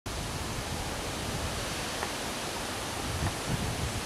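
Steady rushing noise of stormy weather outdoors: an even hiss that holds level throughout, with no thunderclap.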